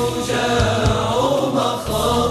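Arabic nasheed: voices chanting a drawn-out melody in harmony, with a few low beats underneath.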